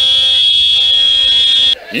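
A horn sounding one long, loud, steady note that stops shortly before the end.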